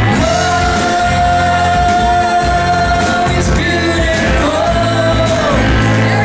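Live rock band with a woman's voice holding a long high note for about three seconds, then a second shorter held note, over electric guitar, electric bass and a drum kit with steady cymbal strokes.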